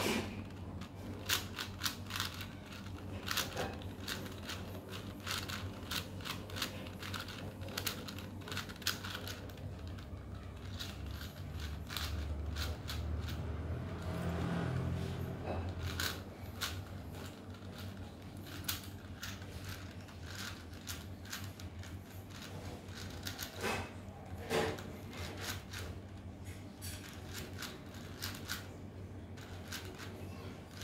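Plastic 4x4 Rubik's cube layers clicking and clattering in quick, irregular runs as they are turned by hand, over a steady low hum. A low rumble swells for a few seconds midway.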